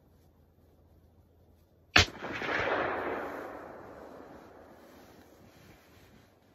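A single hunting rifle shot about two seconds in: a sharp crack followed by a long rolling echo that fades away over about three seconds.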